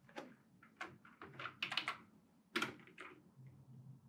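Computer keyboard keys tapped several times, a handful of faint, separate clicks while lines of code are edited.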